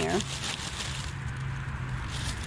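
Steady low hum of road traffic, with light rustling in the first second.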